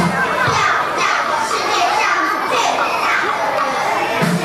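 Many young children's voices talking and calling out at once, with the backing music cutting out at the start.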